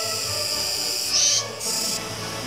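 Kuroiwa tsukutsuku cicadas (Meimuna kuroiwae) singing, a steady high-pitched buzzing. Just past the middle a louder, higher burst of song stops abruptly, and after a brief dip the buzzing carries on.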